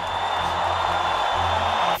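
A large crowd cheering in a steady roar that swells slightly, with a background music bed underneath.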